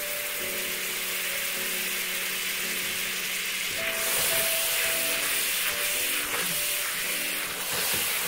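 Butter sizzling as it melts in a hot wok beside dry-roasted semolina: a steady hiss that gets louder about four seconds in, when a spatula starts stirring and scraping it into the semolina.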